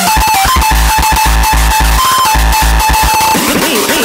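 Uptempo hardcore electronic music: distorted kick drums pounding at about 220 beats a minute under a stepping synth lead. Near the end the kicks drop out briefly while a wobbling synth bends up and down in pitch.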